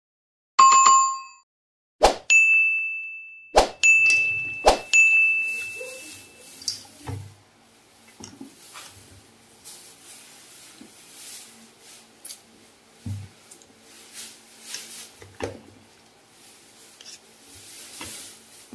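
Wooden utensil knocking against a stainless steel mixing bowl four times in the first five seconds, each knock leaving the bowl ringing with a high tone. After that, softer scraping and rustling as sliced green mango is stirred in the bowl.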